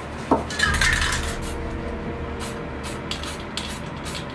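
Handling noise from spray-painting: a sharp metallic clatter with a falling ring in the first second, then short crisp rustles and scrapes as a paper mask is laid across the painting. A steady low hum runs underneath.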